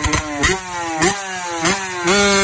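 Motorcycle engine accelerating hard through the gears: the pitch climbs, drops sharply at each upshift, and climbs again, with about three shifts in two seconds.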